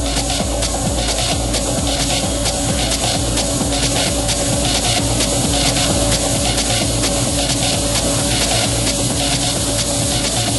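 Techno DJ set in a breakdown: the heavy kick and bass are pulled back, leaving a fast, steady pattern of hissy percussion over held synth tones.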